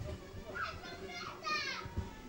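High-pitched children's voices calling out, two short cries, the second sliding down in pitch at its end.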